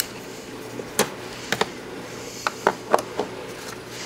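Irregular sharp clicks and taps of a hand tool backing out a Torx screw from the plastic cabin air filter pan, about seven in under three seconds, over a faint steady hum.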